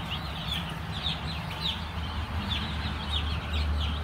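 A flock of day-old chicks peeping without a break: many short, high cheeps, each falling slightly in pitch, overlapping one another over a low steady hum.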